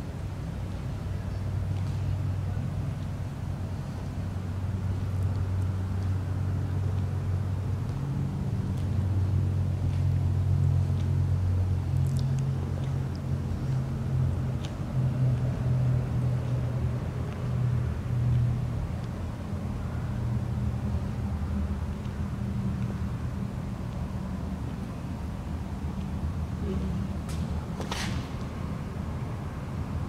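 A low, steady rumble of distant road traffic that grows louder in the middle and then eases off, with a few faint ticks. Near the end comes one sharp, sudden click.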